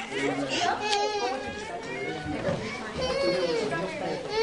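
Several children's voices chattering over one another, high-pitched and indistinct, with no single clear speaker.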